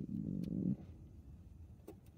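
A short, low hesitation hum from a man, under a second long. It is followed by quiet car-cabin background and a faint click near the end.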